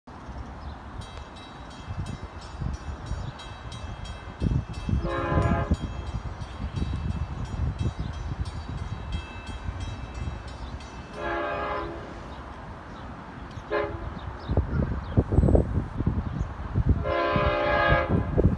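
Long Island Rail Road diesel train's horn sounding the grade-crossing signal as it approaches: two long blasts, one short, and a final long blast starting near the end. A crossing bell dings rapidly in the background early on.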